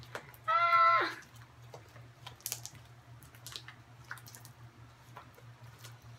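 A child's short wordless vocal sound, held for about half a second, then faint, scattered sticky clicks and small pops of homemade slime being stretched and kneaded by hand, over a low steady hum.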